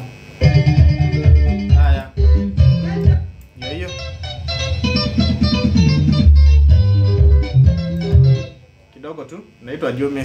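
Electric guitar playing a Kamba benga tune, picked lead notes over a bass line, stopping about a second before the end.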